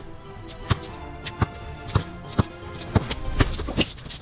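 Background music with sharp, unevenly spaced thuds of a basketball being dribbled on an outdoor court, about every half second.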